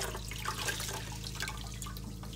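Grout sponge being rinsed and squeezed out by hand in a pot of water, with irregular splashing and dripping.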